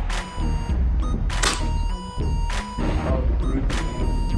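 Background music, with a few sharp cracks over it, the loudest about a second and a half in and near the end: shots from a Daisy multi-pump air rifle.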